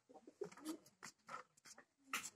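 A few faint, short bird calls against near silence.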